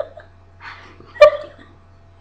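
A breathy huff, then one short, sharp, loud yelp about a second in: a person crying out at the burn of very hot chilli nuts.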